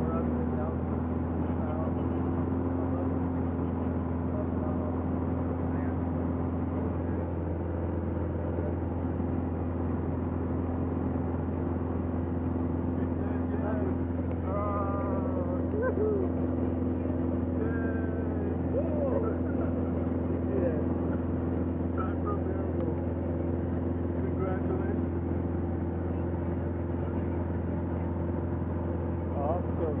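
Light aircraft's engine and propeller droning steadily, heard inside the cabin, with faint voices over it in the middle.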